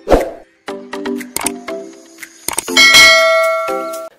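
Logo-animation sound effects: a quick run of short pitched notes and a whoosh, then a loud bright chime-like chord hit about three seconds in that rings on and slowly fades.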